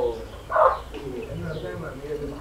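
Faint cooing of a dove in a lull between speech, with one louder call about half a second in.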